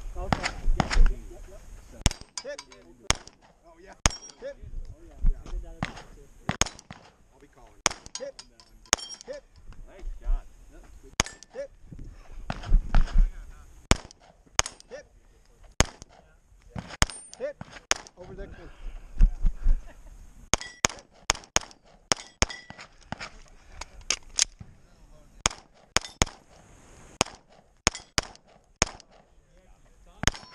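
Semi-automatic pistol fired close to the microphone: dozens of shots over a timed course of fire, starting about two seconds in and often in quick pairs.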